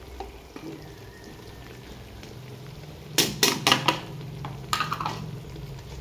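A plastic bowl knocked against the rim of an aluminium cooking pot to shake out the last of the spice powder: a quick run of about four sharp knocks a little after three seconds in and one or two more near five seconds, over a low steady hum.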